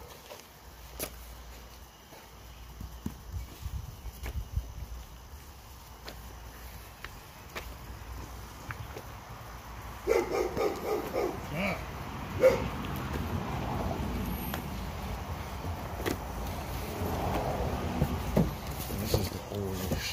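Bagged comic books rustling and clicking in their plastic sleeves as a stack is leafed through by hand. A dog barks in the background from about ten seconds in.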